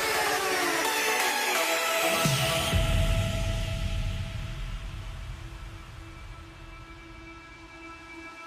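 Electronic background music: a fast, dense beat with sweeping synth sounds gives way about three seconds in to held synth tones that fade gradually.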